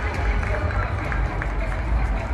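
Background hubbub of a large indoor arena: many distant voices talking over a steady low rumble.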